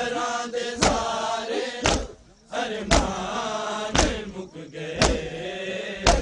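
A crowd of men chanting a Punjabi noha in unison while beating their chests together, a sharp collective slap about once a second between the sung lines.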